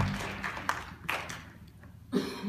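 Scattered audience applause dying away, ending in a few separate claps.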